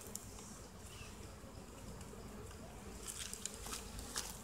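Honeybees buzzing faintly around a hive box that has been opened and is being handled, with a few light clicks near the end.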